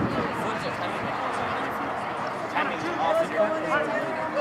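Indistinct chatter of spectators' voices at a baseball game, with one or two voices standing out more clearly in the second half.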